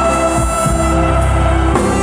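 Live band music played loud on stage, sustained chords held steady with no voice singing over them.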